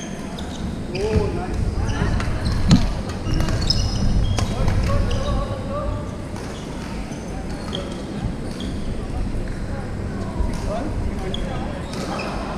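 Echoing badminton-hall sound: shoes squeaking on the wooden court floor, rackets striking shuttlecocks in scattered sharp clicks, and players' voices in the background.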